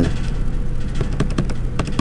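Keys of a Texas Instruments TI-30Xa scientific calculator being pressed: a run of light, uneven clicks as a long number of zeros is keyed in, over a steady low hum.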